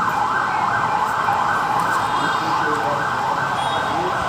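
Siren sounding in a fast up-and-down sweep, about two cycles a second, loud over the crowd.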